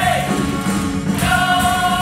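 Live musical-theatre ensemble singing a number with instrumental accompaniment, recorded from the audience; a sung note is held steady from about a second in.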